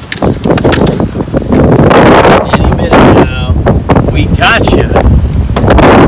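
Heavy wind buffeting the microphone on a small boat under way across the water, coming in loud gusts that peak about two to three seconds in and again near the end.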